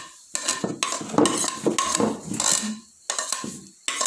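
Spoon scraping and knocking against a bowl as khoya is scraped off it into a pot of grated carrot halwa: a quick run of scrapes and clinks, with a short pause near the end.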